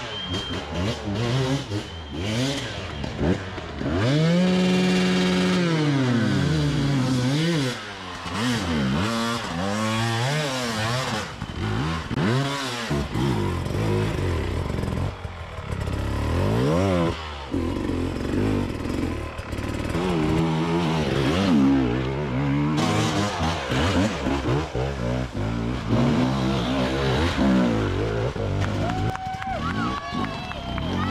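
Enduro dirt-bike engines revving up and down again and again, blipping and holding the throttle as the riders claw up a steep, loose forest climb. There is one long high rev a few seconds in.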